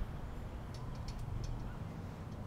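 Outdoor ambience: a low steady rumble with a few faint, brief high ticks about a second in.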